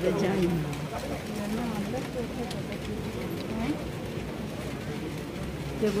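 Indistinct voices of people talking at moderate level over a steady outdoor background, with no words clear.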